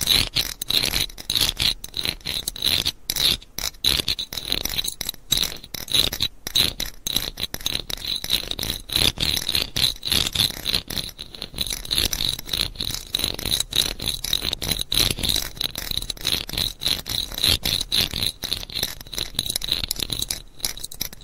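Scratching close to the microphone in quick, fairly even repeated strokes, a few a second.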